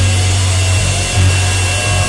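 Live band's distorted electric guitar and bass holding a loud, noisy sustained wash over a steady low bass note, with a thin high steady tone above it.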